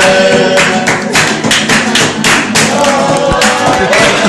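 Flamenco-style party music: an acoustic guitar strummed while people sing, driven by loud hand clapping in rhythm (palmas), several claps a second.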